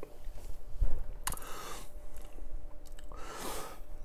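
Quiet mouth sounds of a man tasting a sip of beer: small smacks of the lips and tongue, with a short breath about a second in.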